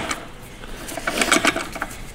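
Quick runs of metallic clicks from a ratchet wrench turning the puller fitted to the 6R80 transmission's front pump, busiest from about a second in.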